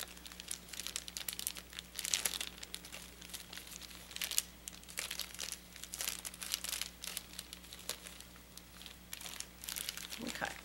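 Thin plastic catheter sleeve crinkling and rustling as gloved hands peel it back and pull it off a Foley catheter, in a run of irregular crackles.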